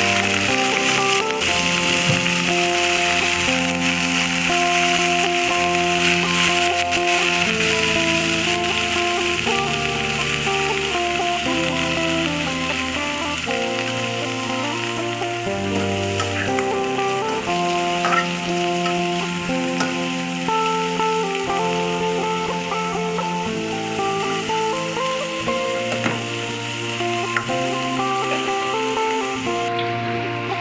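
Fresh prawns sizzling hard in hot oil in an aluminium wok, stirred with a metal spatula, with background music underneath.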